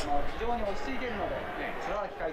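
A man speaking quietly in the background, quieter than the commentary around it.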